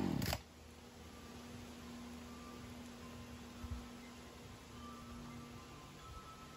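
A gas chainsaw dropping off from full throttle in the first moment, its pitch falling away, then only a faint steady hum with a soft thump near the middle.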